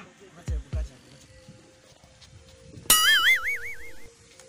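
Comedy sound effects: two short deep booms falling in pitch about half a second in, then, a little before the end, a loud high wobbling cartoon-style boing lasting about a second, the loudest sound here.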